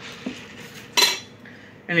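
A single short clink or clatter about a second in, like a hard object set down on a table, against faint room noise.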